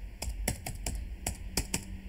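Typing on a computer keyboard: about ten quick, uneven key clicks as a word is typed.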